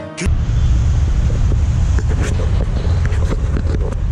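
Wind buffeting the microphone of a handheld action camera: a loud, steady low rumble that starts abruptly a moment in, with a few light handling clicks.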